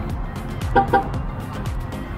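Background music plays throughout. About a second in come two short beeps in quick succession from a Tesla as a key card is tapped on its door pillar.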